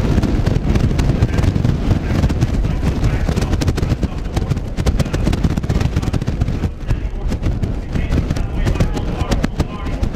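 Polo ponies galloping on turf, their hooves making a continuous run of sharp thuds, over a low rumble of wind on the microphone.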